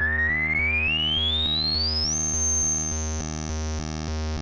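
Korg Mono/Poly analog synthesizer playing a repeating low note pattern, about four notes a second. Over it a high tone glides steadily upward for about two seconds, then holds.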